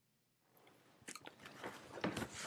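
Rustling and crackling handling noises with many small clicks, close to the microphone, as a person shifts and reaches about in his seat; they start about half a second in and grow louder.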